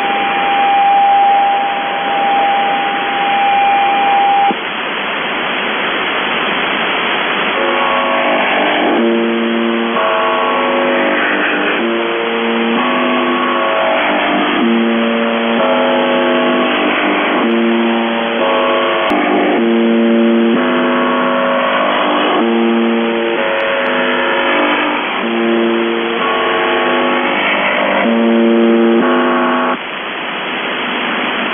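Shortwave radio reception on 4625 kHz: a steady test tone over static that stops about four seconds in. After a few seconds of hiss, a multi-tone signal follows, several tones sounding together and jumping in pitch in steps every half second or so, with short breaks.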